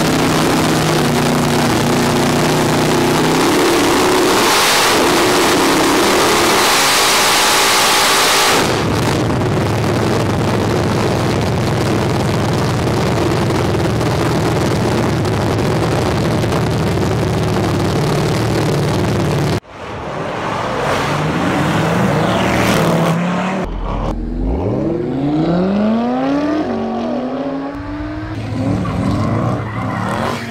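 Supercharged V8 of a 1600 hp Dodge Challenger running on a chassis dyno: loud and steady at first, then a louder, harsher full-power pull from about eight seconds in until it cuts off abruptly at about twenty seconds. After the cut, other engine notes rise and fall in pitch.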